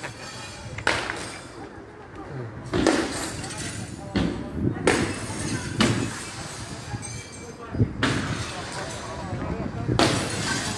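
A string of sharp, irregular bangs and crashes, about six in all, with indistinct voices between them.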